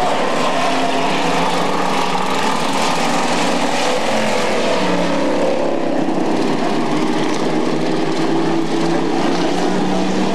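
Street stock race car engines running on an asphalt oval as several cars lap the track, a steady engine drone with one engine note falling about halfway through as a car goes by.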